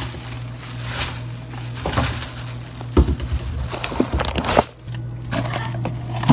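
Clear plastic bag rustling and crinkling as food is handled and packed into it, with sharp louder crackles about three seconds in and again around four seconds, over a steady low hum.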